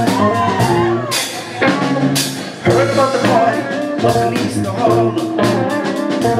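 Live rock band playing: electric guitars, bass and drum kit, with regular drum hits through the groove.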